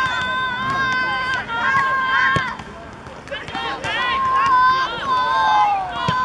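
Women's voices shouting long, drawn-out calls during play, several overlapping, with a quieter gap about halfway through.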